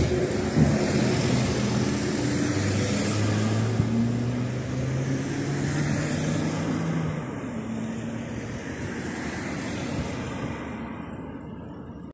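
Street traffic passing close by: motor vehicle engines with a steady low hum over tyre and road noise, louder in the first half and slowly fading toward the end.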